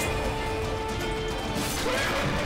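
Dramatic trailer music with sustained notes, mixed with battle sound effects: crashing blows and clashes, the loudest near the end.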